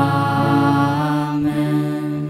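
A young man and a young woman chanting a sung liturgical response together into microphones, on long held notes.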